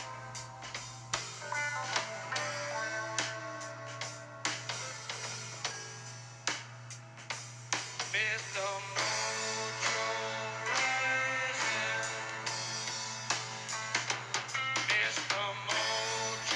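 Background music with plucked guitar.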